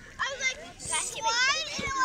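Young children shouting and calling out, their high voices rising and falling, with a couple of low thumps near the end.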